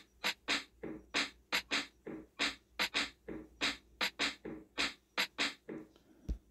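Sampled drum hits from a phone beat-making app's Boom Bap Classic kit, triggered by tapping the pads: a fast, slightly uneven run of short hits, about four a second.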